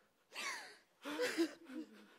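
An actor's harsh, breathy gasp, then a short wavering moan, the louder of the two, in the second half: acted distress.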